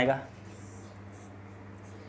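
Marker pen writing on a whiteboard: faint scratchy strokes over a steady low hum.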